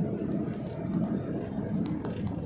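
A car driving along a road, heard from inside the cabin: a steady low rumble of road and engine noise.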